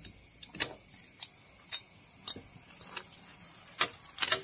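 Marinated pork pieces being mixed in a steel pot, with irregular sharp clicks and clinks against the metal, about seven in four seconds, the loudest near the end.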